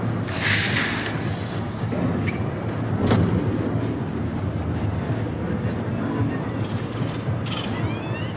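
Downtown street noise: a steady low rumble of traffic, with a brief hiss about half a second in and a single sharp click around three seconds.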